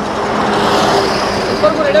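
A vehicle passing on the highway: its road noise swells to a peak about a second in and then fades, over a steady low hum.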